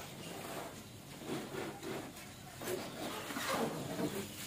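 Quiet rustling and scraping of a cardboard toy box being handled, its outer sleeve slid off, with a faint child's voice in the middle.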